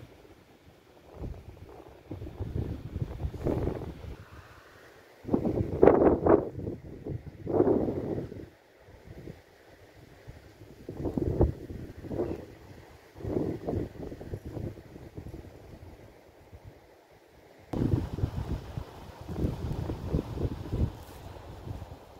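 Wind buffeting the microphone in irregular gusts of low rumble, strongest a few seconds in.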